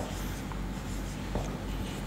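Marker pen writing on a whiteboard, faint, over a steady low hum.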